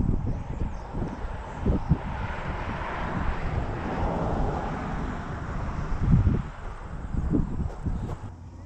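Low, gusty wind rumble on the microphone of a camera carried on a pole while walking outdoors, with a few bumps from handling or steps. A softer rushing noise swells and fades in the middle.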